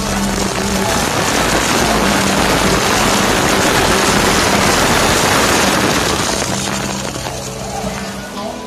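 Heavy spray of water pouring and splashing down onto people and the camera, building to its loudest in the middle, then easing off near the end, with background music underneath.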